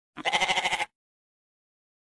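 A sheep bleating once: a single quavering call lasting under a second.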